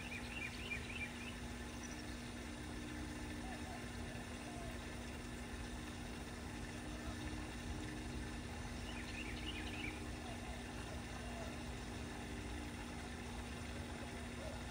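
Steady low hum with a low rumbling background, and short bursts of bird chirps about a second in and again around nine seconds.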